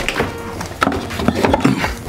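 A few short knocks and clicks of objects being handled behind a bar.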